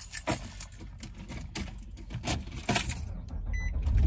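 Scattered clicks and rustles of handling close to a phone microphone inside a car, over a low cabin rumble that grows louder near the end. A short high beep sounds about three and a half seconds in.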